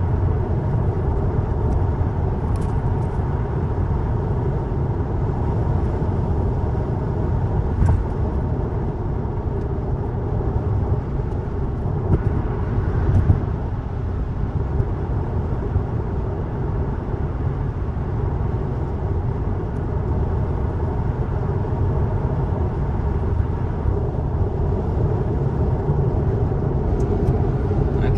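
Steady tyre and wind noise inside a Tesla's cabin at highway speed, about 65–70 mph, a low even rumble with no engine note. A couple of faint knocks come about a third and halfway through.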